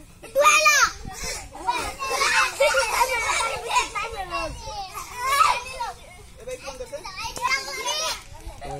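A group of children shouting and calling out excitedly over one another, with a loud high shriek about half a second in.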